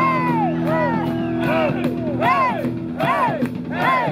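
Rock band playing live: drums with regular cymbal strokes under a pitched lead line that swoops up and down again and again, with a held low chord that drops out about three seconds in.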